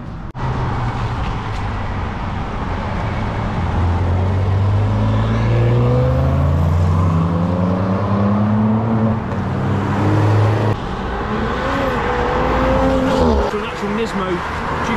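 Cars driving past on a wet road, with tyre hiss on the wet tarmac. One car's engine note rises steadily as it accelerates, then cuts off suddenly about ten and a half seconds in, and another engine note follows.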